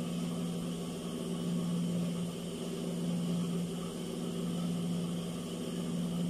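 A steady low electric hum that does not change, with no distinct handling sounds above it.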